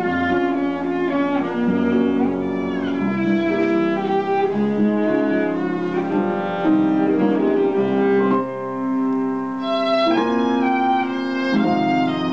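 Violin played with the bow: a continuous melody of sustained notes, with a sliding pitch about two and a half seconds in and a briefly softer, thinner passage a little past the middle.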